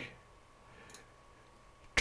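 Near silence, broken once, about a second in, by a single faint computer mouse click.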